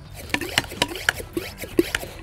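Plastic garden pump sprayer being handled, with liquid sloshing inside and a string of small irregular clicks from the plastic tank and pump.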